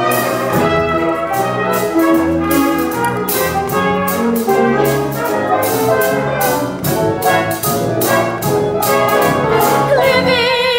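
Brass-led pit band playing an upbeat show tune, with quick sharp taps throughout.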